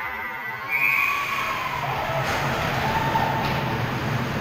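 A siren-like goal horn wailing for a goal, starting about a second in and sliding slowly lower, over rink noise.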